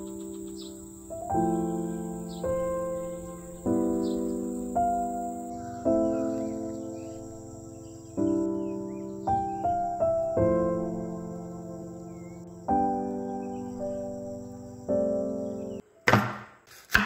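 Slow background music of keyboard chords, a new chord struck every one to two seconds and fading away, laid over a steady high-pitched insect trill with a few faint chirps.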